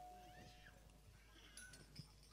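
Near silence: a ringing tone left from a sharp strike fades out in the first second, then a few faint, short calls that rise and fall in pitch.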